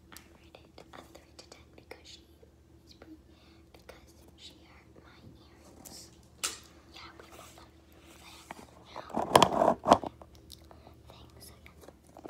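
A girl whispering close to the microphone, with small soft clicks and mouth sounds between the whispers. About nine seconds in comes a louder burst lasting about a second.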